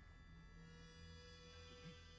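Near silence: a faint steady low hum, joined about half a second in by a thin steady tone.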